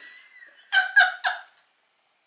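A woman's laughter: a thin, high squeal, then three short bursts of laughing, after which the sound cuts off suddenly.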